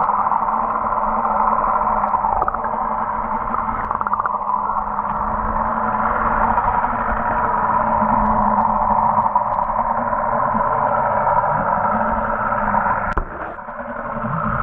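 Muffled underwater sound picked up through an action camera's waterproof housing: a steady dull rush of water with a low hum, briefly dropping away about 13 seconds in.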